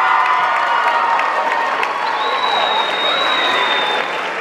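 An audience applauding and cheering, with shouts from the crowd and a long, high, steady tone through the second half.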